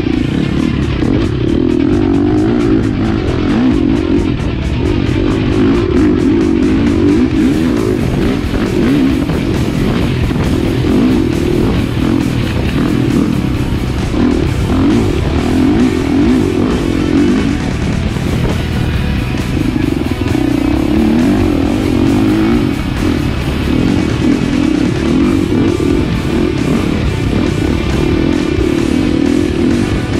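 Husqvarna dirt bike engine, its revs rising and falling over and over as it is ridden along a rough trail, with guitar music laid over it.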